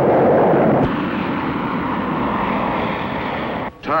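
Jet aircraft engine noise, a loud steady rushing sound that starts abruptly, is loudest for about the first second, then holds level and cuts off sharply just before the end.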